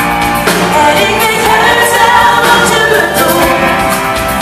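A woman singing a Dutch pop song live into a microphone, backed by a band that includes bass guitar.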